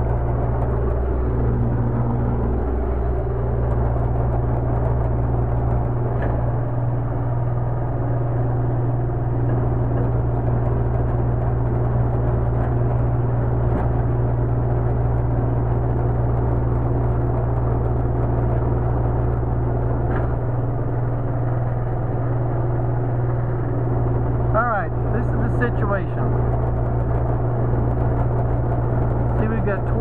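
Steady low hum of the electric vacuum pump on a brake booster test bench, running continuously while the bench holds about 20 inches of vacuum on the activated booster.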